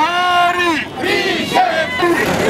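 Protest chant: a single loud male voice, through a megaphone, calling out two long drawn-out slogan lines over the noise of the marching crowd.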